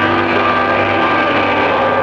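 Cartoon orchestral score holding one loud, sustained chord of several steady notes over a low drone.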